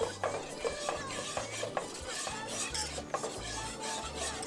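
Wire whisk beating béchamel sauce in a nonstick pot: quick, repeated strokes of the wires scraping and clicking against the pot. Milk is being whisked into a butter-and-flour roux as it thickens.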